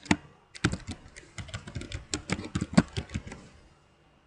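Computer keyboard typing: a single keystroke at the start, then a quick, uneven run of keystrokes that stops a little past three seconds in.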